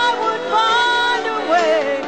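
A woman singing karaoke into a microphone over a recorded backing track. She holds long notes that waver in pitch.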